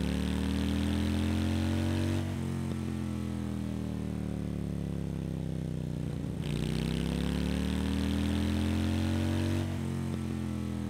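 Harley-Davidson motorcycle V-twin engine under way. It pulls up in pitch for about two seconds, then winds down steadily as the bike slows for about four seconds. About six and a half seconds in it pulls up again, easing off just before the end.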